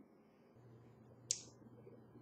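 Near-quiet room with a faint low hum and one brief sharp click a little over a second in.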